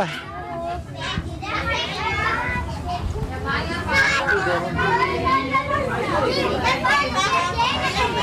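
Many young children's voices chattering and calling at once, a continuous babble with no single voice standing out.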